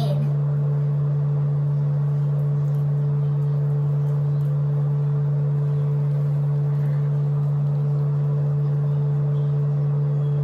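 A steady low hum: one constant tone with a fainter, higher tone above it, unchanging in pitch and level.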